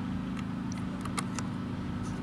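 Steady low drone of a garbage truck's engine idling, with a few light clicks over it.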